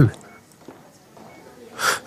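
A man draws a sharp breath in, about a second and a half after a quiet pause.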